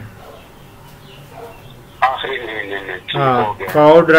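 A quiet pause of faint room hiss, then from about halfway a man's voice heard over a telephone line, thin and cut off above the phone band. Near the end a fuller, closer man's voice begins.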